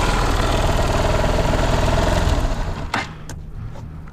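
Single-cylinder engine of a Honda XR125-replica supermoto idling steadily, then dying away about two and a half seconds in, with a sharp click as it goes quiet.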